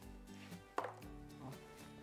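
A ping-pong ball landing in a cardboard egg tray with one sharp knock a little under a second in, followed by a few light clicks as it settles.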